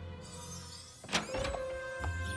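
Cartoon background score fading down. About a second in, a sudden door-opening sound effect, followed by a single held note in the music.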